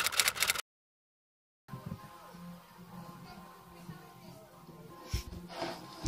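A quick run of typewriter key clicks lasting about half a second, then a second of dead silence. After that a faint background of television sound with music and a steady low hum.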